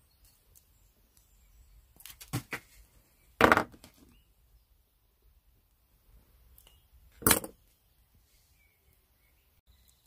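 Flush wire cutters snipping thin copper weaving wire: a few light clicks about two seconds in, a sharp snip about three and a half seconds in, and another sharp click about seven seconds in.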